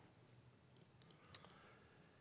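Near silence: room tone through a desk microphone, with one faint short click a little past halfway.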